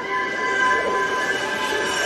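Film soundtrack: sustained high orchestral chords under a rushing whoosh that swells as the glowing green crystal flies past overhead.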